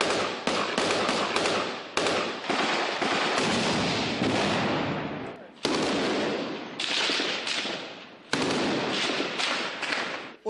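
Small-arms gunfire echoing along a city street: a run of sharp shots, each with a long fading echo. Stronger reports come about five and a half, seven and eight seconds in.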